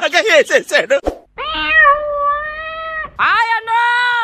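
Quick speech, then two long drawn-out, high, meow-like vocal calls: the first held steady for almost two seconds, the second starting with a rising swoop.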